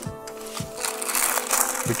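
Small clear plastic zip-lock bag crinkling and rustling in the hands as it is worked open to get earphones out.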